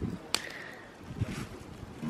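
Garden bonfire of leaves and sticks burning, with one sharp crack about a third of a second in and faint crackle after it.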